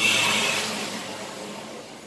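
Rushing noise of a road vehicle going past, fading steadily away.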